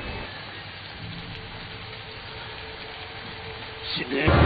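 Steady heavy rain falling on a street, an even hiss, with a faint low held note underneath.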